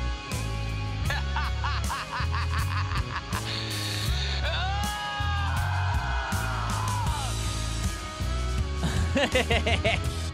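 Playback of a heavy rock mix: loud bass and drums under layered, effected vocals, with a long falling vocal line in the middle and a rapid, wavering laugh-like vocal near the end. The screamed vocal fizzles out at the end, a take the singer wants to redo.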